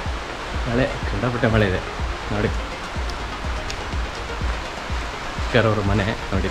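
A man talking in short phrases, with a steady hiss of background noise under and between his words.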